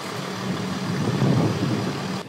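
Engine of a white UN Mercedes-Benz G-Class off-road vehicle running steadily as it drives slowly past.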